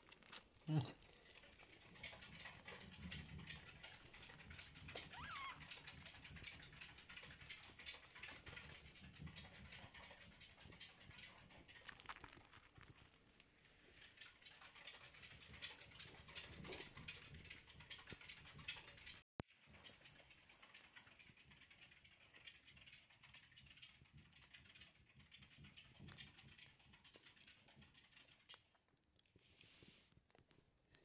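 Faint scratching and rustling of a degu's claws on a cotton hoodie as it climbs over a person's arm and lap, with a soft bump just under a second in and one short falling squeak about five seconds in.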